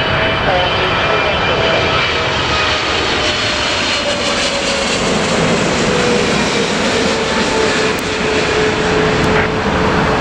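Twin GE90 turbofans of a British Airways Boeing 777-300ER on final approach, gear down: a loud, steady jet roar as it passes low overhead, with a whine that slowly falls in pitch as the aircraft goes by.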